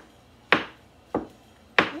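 Kitchen knife chopping through mushrooms onto the cutting surface: three crisp chops, evenly spaced about two-thirds of a second apart.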